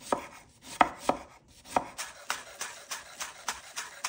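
Chef's knife cutting on a wooden cutting board: a few separate strokes slicing a lemon into thin rounds, then quick steady chopping of green onions at about four strokes a second.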